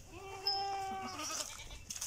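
A goat bleating: one steady, pitched call lasting about a second.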